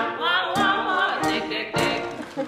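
Man and woman singing a Broadway show-tune duet, the sung notes bending and breaking from word to word.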